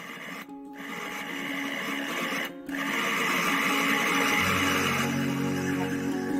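Electric food chopper's motor running, cutting out briefly twice, as its blades coarsely chop steamed cassava and liquid palm sugar.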